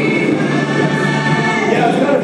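Film soundtrack music with choir-like voices singing long held notes, moving to new notes near the end.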